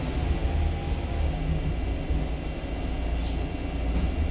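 Volvo B8RLE bus's diesel engine heard from inside the passenger saloon: a steady low rumble, with a short hiss about three seconds in.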